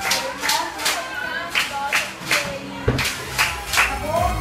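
Hands clapping in a steady rhythm while a voice sings a children's song. About three seconds in, an electronic music bed with deep bass comes in underneath.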